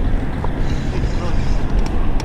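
Wind buffeting the camera microphone over open water: a steady low rumble.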